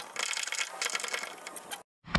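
Metal ratchet of a tie-down strap rattling and clicking irregularly as it is handled, with webbing sliding. It cuts off suddenly to silence near the end.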